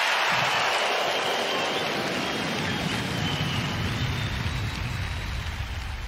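Intro sound effect: a rain-like hiss with a low pulsing underneath, slowly fading away.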